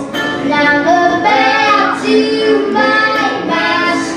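A young girl singing lead with a live country band, holding long notes.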